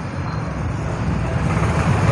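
Street traffic noise: a low, steady rumble of passing vehicles that grows gradually louder.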